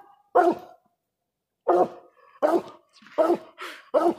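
Coonhound barking treed at the foot of a tree: five short barks, the first about half a second in, then a gap of over a second, then about one every 0.7 s. These are the dog's treeing barks, telling the hunters that the raccoon has gone up this tree, here a hollow den tree.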